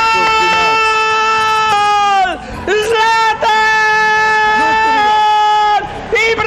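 A man's drawn-out, high-pitched goal cry, held at a steady pitch in two long shouts. The first breaks off with a falling pitch about two seconds in. The second is held from about three seconds until just before the end.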